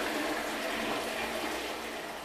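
Full flush of a Hindware concealed wall-mounted cistern into a wall-hung rimless toilet bowl: a strong, high-pressure rush of water that eases off gradually toward the end.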